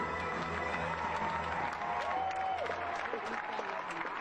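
Arena crowd applauding, with music and scattered voices over it.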